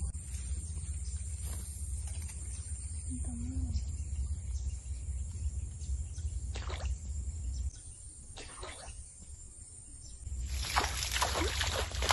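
Water splashing at the surface of a swampy ditch as a snakehead strikes at a soft frog lure, starting suddenly about ten seconds in. Before that there are only a couple of short sloshes over a steady low rumble.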